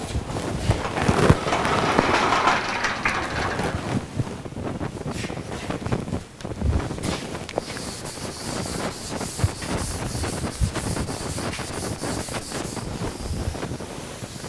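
A chalkboard being wiped with a sponge eraser, a steady rubbing hiss through the second half. Before it come louder scraping and a few knocks in the first few seconds.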